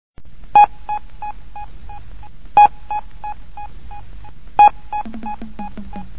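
Electronic beep effect opening a reggae record: a loud beep every two seconds, three times, each trailing off in an echo that repeats about three times a second. A low bass note comes in near the end.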